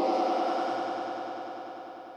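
A held sung note run through vocal effects with distortion and a fast, warbling chorus. It fades away steadily as the note's effect tail dies out.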